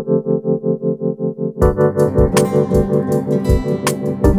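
Instrumental background music: a quick repeating melodic figure of about six notes a second, joined about one and a half seconds in by drums and a fuller band, with a sharp crash near the end.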